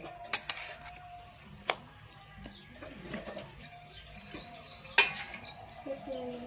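A rice paddle scraping and scooping cooked rice in a steel pot, with three sharp knocks of the paddle against the steel. The loudest knock comes about five seconds in.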